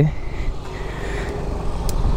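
Yamaha NMAX scooter's single-cylinder engine idling steadily, with a sharp click near the end.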